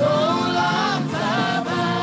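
Gospel worship song sung by a choir, the voices holding long melodic lines.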